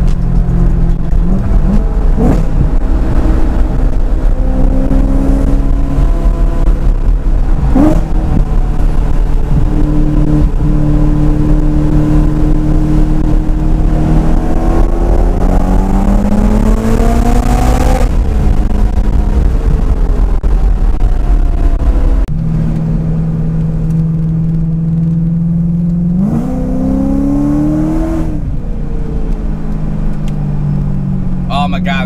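Supercharged BMW M3 engine heard from inside the cabin, climbing in pitch under acceleration and dropping off sharply when the throttle is lifted or a gear is changed. A long pull rises to a peak a little past the middle and falls away suddenly; the engine then runs steadily before one more short rise near the end.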